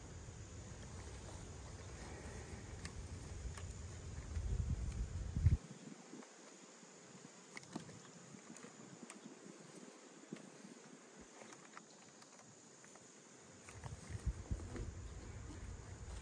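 Faint buzzing of honeybees around the hives, with low rumbling and rustling for the first five or six seconds and again near the end.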